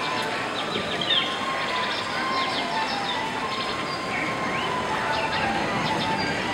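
Dining-room ambience: a steady murmur of many diners' voices, with jungle bird calls chirping and whistling over it from the staged jungle soundscape.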